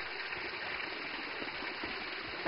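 Steady rush of running mountain spring water.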